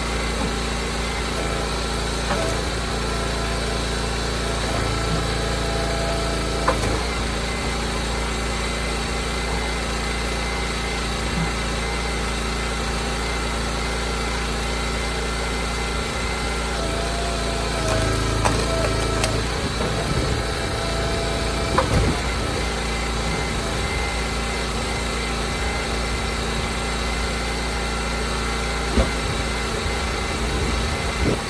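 Gas engine of an Eastonmade Ultra hydraulic log splitter running steadily while it forces a large white oak block through the wedge. A few sharp cracks and knocks of the wood splitting and pieces dropping stand out, the loudest about two-thirds of the way in and another near the end.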